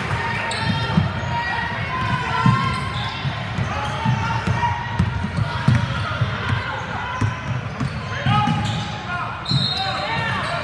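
A basketball bouncing on a hardwood gym floor during play, short thuds in an echoing hall, under the chatter and calls of players and spectators.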